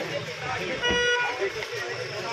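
One short car horn toot about a second in, over the overlapping voices of a crowd.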